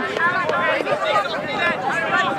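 Several overlapping shouting voices of players calling out during play, with no single voice standing clear.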